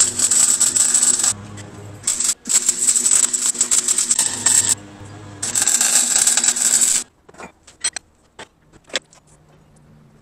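MIG welding on steel: the arc crackles in three bursts of one to two seconds each and stops about seven seconds in. A few light clicks follow.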